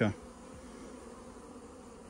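Honey bees humming steadily over an open hive, a low, even drone.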